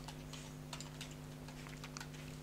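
Faint typing on a computer keyboard: a string of light key clicks as a word is typed, over a steady low hum.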